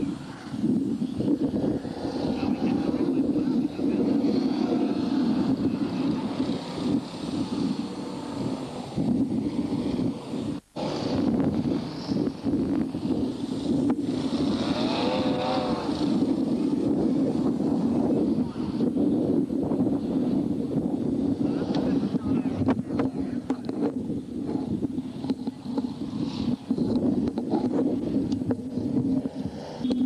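BriSCA Formula 1 stock cars' V8 engines running steadily together, a continuous low drone, with a momentary cut in the sound about ten seconds in.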